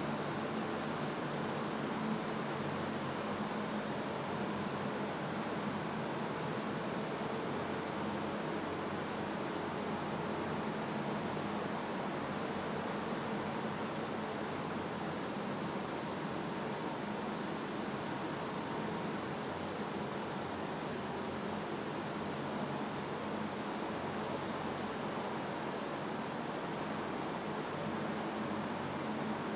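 Heavy transporter trucks driving slowly past in a column, heard as a steady hiss with a low engine hum that stays even throughout.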